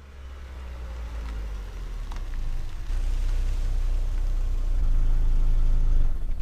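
A compact SUV's engine running at low speed as the car reverses into a parking spot close by, a steady low rumble that grows louder as it nears.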